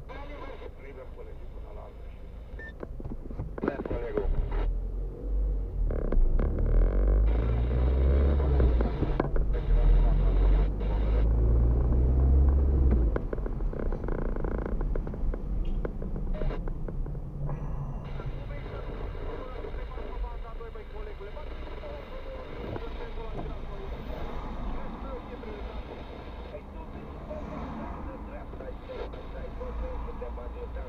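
Car engine and road noise heard inside the cabin as the car pulls away and drives through town, loudest with a rising low engine note from about four seconds in until about thirteen seconds, then settling to a steadier, quieter run and easing near the end.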